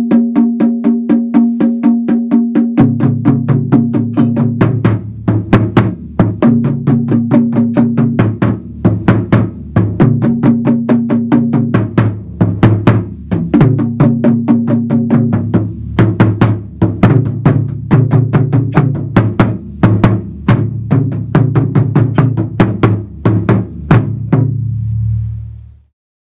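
Two Japanese taiko drums struck with wooden bachi sticks in a steady, driving rhythm: one drum keeps a support pattern while the second, lower-sounding drum joins about three seconds in to play answering phrases. The strikes come a few per second with a deep ringing tone, and both drums stop together shortly before the end.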